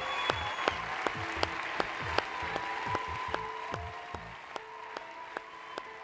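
Audience applauding, with soft background music of sustained notes underneath; the sound fades out gradually through the last seconds.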